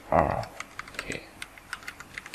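Computer keyboard typing: irregular keystroke clicks, a few per second, as formulas are entered by keyboard alone.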